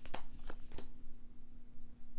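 Tarot cards being drawn from a deck and laid down on a cloth-covered table: three light card clicks in the first second, then quieter handling, over a faint steady hum.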